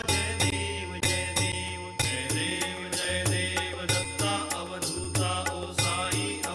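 Hindu devotional aarti music: chanted singing over a steady percussive beat of about two strikes a second, with a steady ringing tone behind it.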